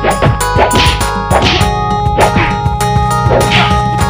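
Punch and kick hit sound effects, several in quick succession with swishes between them, over a music soundtrack in a choreographed martial-arts fight.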